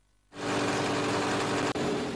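Small engine driving an organic-waste shredder (compost chopper), running at a steady pitch. It starts about a third of a second in, breaks off briefly near the end, then carries on more quietly.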